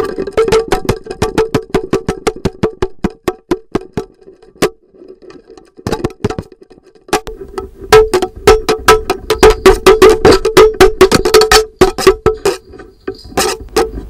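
Contact-mic recording from the surface of a cut-open jackfruit: quick, irregular plucks and taps on the fruit and its stringy fibres, each with a short twangy ring at much the same low pitch. The plucks thin out to a few isolated ones in the middle, then come back denser and louder from about eight seconds in.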